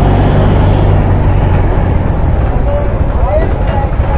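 Steady low rumble of a motorcycle ridden slowly through town traffic close behind a truck: engine and road noise with no distinct event standing out.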